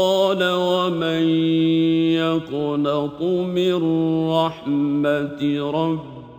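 A man's voice reciting the Qur'an in Arabic in melodic tajweed style, holding long notes in phrases with brief breaks between them.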